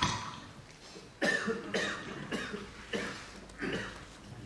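A person coughing several times in short separate bursts, one at the start and then a run of about five, roughly one every half second.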